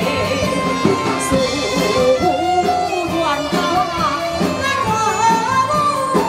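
Taiwanese opera (gezaixi) singing: a woman's voice sung into a handheld microphone and amplified, with instrumental accompaniment.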